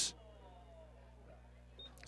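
Near silence: a faint steady electrical hum in the broadcast feed, with one brief, faint high-pitched tone near the end.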